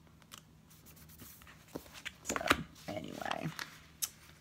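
Paper and sticker handling on a spiral-bound planner: light rustling and scattered small clicks and taps, with one sharper click about halfway through.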